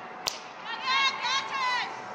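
A cricket bat striking the ball once, a sharp crack about a quarter second in, followed by high-pitched shouts from players for about a second.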